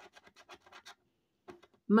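Scratching the coating off one square of a scratch-off lottery ticket with a handheld scratcher: a quick run of short, dry scratches that stops about a second in, with a few more strokes near the end.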